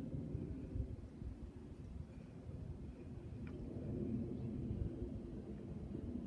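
Quiet outdoor background with a faint, uneven low rumble and no distinct sound standing out.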